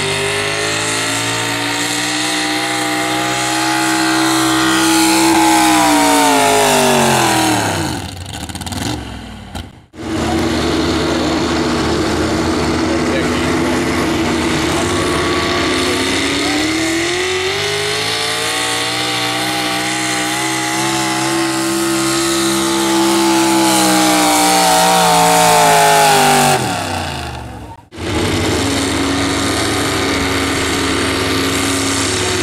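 Pulling pickup trucks, each hauling a weight-transfer sled, one after another. The engines are held at high revs under load, and the pitch rises and then falls away as the driver lets off at the end of each pull. The sound breaks off abruptly twice as one truck gives way to the next.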